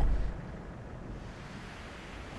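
Small waves breaking and washing up a shingle beach, a steady hiss of surf.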